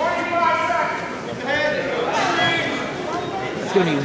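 Several people shouting and talking at once in a gymnasium: spectators and coaches calling out to wrestlers during a bout.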